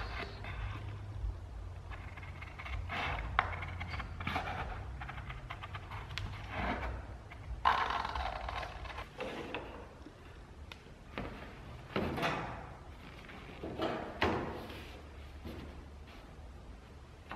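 Hand snips cutting through Ram Board template board in several separate short bursts, with the board scraping and rustling as it is handled. A low steady hum runs beneath.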